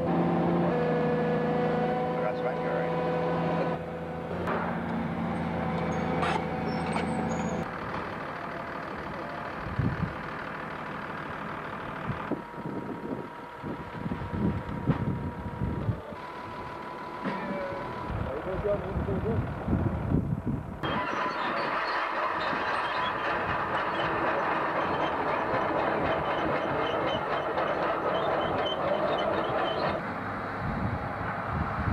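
Diesel engines of farm machinery running, heard in a string of short clips that cut from one to the next. A steady engine hum runs for the first several seconds, uneven rumbling with knocks follows through the middle, and a steadier machine noise fills the last nine seconds or so.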